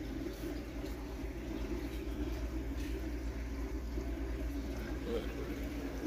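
Steady low hum and hiss of room background noise, with no distinct sound standing out.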